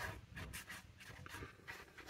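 Faint, irregular scratchy rubbing of a plastic glue-bottle nozzle drawn along a paper envelope's edge as glue is run around it, with some paper rustle.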